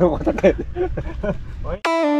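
A man talking over a low background rumble, cut off suddenly near the end by electronic music: a synth tone stepping down in pitch.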